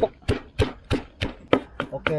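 Wooden pestle pounding chillies in a clay mortar, a steady rhythm of about three strikes a second.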